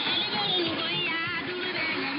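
Music broadcast by Radio Mali, received on shortwave at 9635 kHz through a software-defined radio in synchronous AM. The sound is narrow and muffled, with nothing above about 5 kHz, over a steady hiss of background noise.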